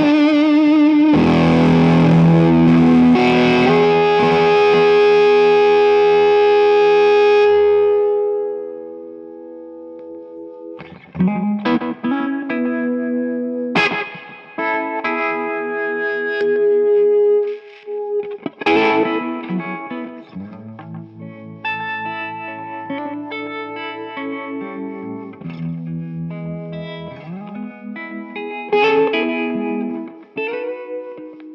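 Josh Williams Mockingbird 335-style semi-hollow electric guitar played loud through fuzz distortion. A big chord rings out for several seconds and fades. Then come picked phrases with stabbed chords and string bends.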